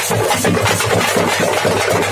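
A group of parai frame drums beaten with sticks in a fast, unbroken rhythm, many rapid strokes overlapping into a dense, loud roll.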